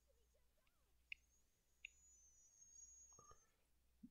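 Near silence: quiet room tone with two faint clicks, about a second in and just under two seconds in.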